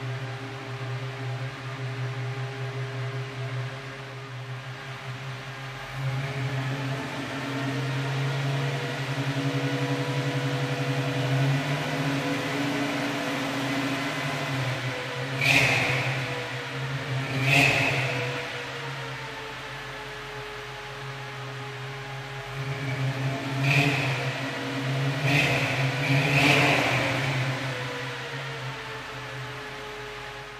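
350 cubic inch Chevrolet small-block V8 idling steadily, with five quick blips of the throttle: two about halfway through, then three close together a few seconds later, each dropping back to idle.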